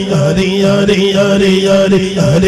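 A male reciter chanting a short devotional phrase over and over into a microphone, held on one steady pitch with a brief dip about twice a second. This is the repetitive call-and-chant section of a naat/manqabat.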